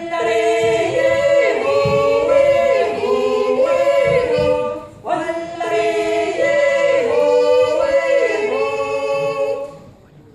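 Five women singing a Jodler, a wordless yodel song, a cappella in close harmony, held notes moving together in two phrases. The first phrase breaks off about five seconds in and the second fades near the end.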